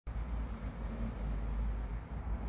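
Outdoor background noise: a low, uneven rumble under a faint hiss.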